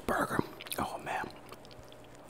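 Close-miked mouth sounds of a man eating a burger: chewing with short mumbled, whisper-like vocal sounds in the first second or so, then quieter faint clicks.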